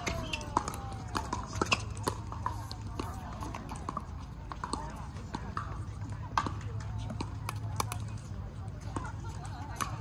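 Pickleball rally: the hollow plastic ball popping off paddles and bouncing on the hard court, a quick run of sharp pops in the first few seconds, then a few single, louder ones.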